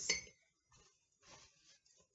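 A few faint, brief handling noises at a kitchen counter: small objects lightly clinking and a paper towel being picked up.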